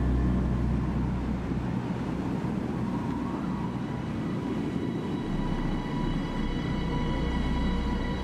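Dark ambient horror film score: a steady low rumbling drone with thin sustained high tones that grow clearer in the second half.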